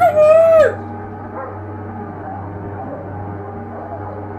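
A loud, high-pitched vocal cry in the first second, rising, held briefly, then falling away. It is followed by a low, steady movie soundtrack with a hum.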